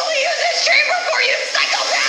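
Episode soundtrack playing: a voice with a wavering, sung-sounding pitch over music.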